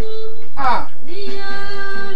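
A voice singing long held notes, broken by a quick falling slide about halfway through.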